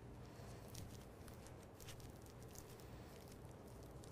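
Faint, scattered crinkling of a butterscotch candy's wrapper being handled and picked open, over quiet room hum.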